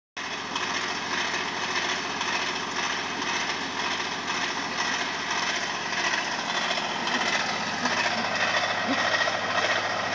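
A steady mechanical drone, like a motor running.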